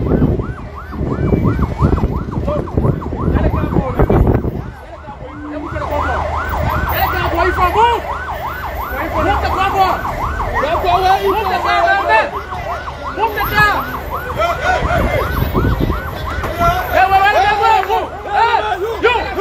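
Vehicle sirens yelping, rising and falling about four times a second. From about six seconds in, more than one siren overlaps. A low rumble runs underneath.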